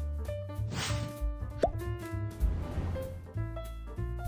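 Background music with a steady bass line, and a single wet plop about a second and a half in as thick creamy sauce is spooned onto the chicken quiche filling, with soft spoon-and-sauce noises around it.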